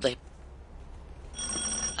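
A doorbell rings with a steady, bright electronic tone that starts near the end, announcing someone at the door.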